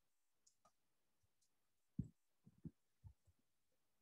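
Faint computer keyboard keystrokes: a handful of soft, separate clicks in the second half, otherwise near silence.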